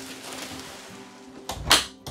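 A folding wall bed's panel swung up into place, ending in one thump near the end as it meets the wall and latches. Quiet background music runs under it.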